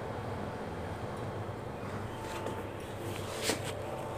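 Faint rustling and scraping of a hand rubbing oil into whole wheat flour in a glass bowl, over a steady low hum. A short sharp click about three and a half seconds in.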